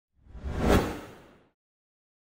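A whoosh sound effect for an animated logo intro: it swells, peaks just under a second in, and fades away by about a second and a half.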